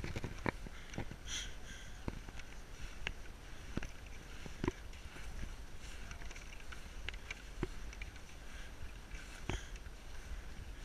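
Wind rumbling on the microphone while moving down a snow slope, with irregular sharp crunches and knocks about once a second, the loudest about halfway through and near the end.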